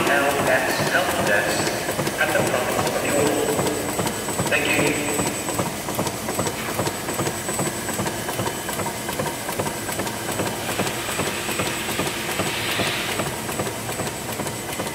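Labelmen IDW-360 die-cutting machine running a printed label web, with a fast, steady mechanical clatter and a faint high whine. People talk in the background near the start and again near the end.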